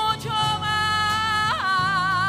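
A woman singing a Spanish-language romantic ballad live, holding long notes with strong vibrato, with a quick slide in pitch about one and a half seconds in before another long held note. A low steady accompaniment runs beneath the voice.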